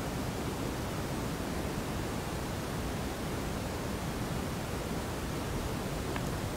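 Steady, even hiss of room tone and microphone noise, with no distinct event standing out.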